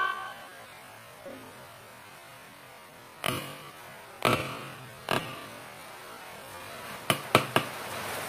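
Quiet room tone broken by about six short knocks and clicks: three spaced about a second apart in the middle, then three in quick succession near the end.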